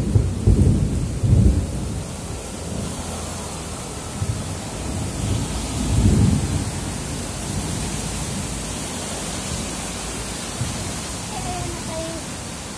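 Heavy rain falling steadily, with low rumbles swelling about a second in and again around six seconds.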